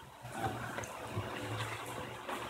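A man's quiet, drawn-out "um" over a steady hiss of room noise.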